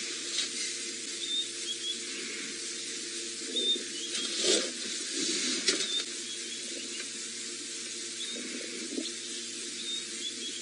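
Outdoor bush ambience: a steady high hiss with short, high bird chirps every second or so, and a few brief rustles around the middle.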